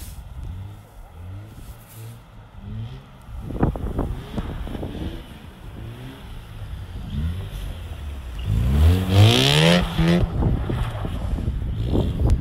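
Mazda RX-8's twin-rotor Wankel rotary engine revving up and down again and again as the car drifts sideways on snow, with one long climbing rev about three-quarters of the way through.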